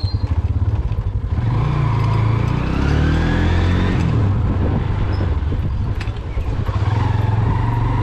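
A Honda CB 150F's single-cylinder four-stroke engine running as the motorcycle rides along at low speed. Its pitch rises from about a second and a half in and eases back about two seconds later, then it runs steadily.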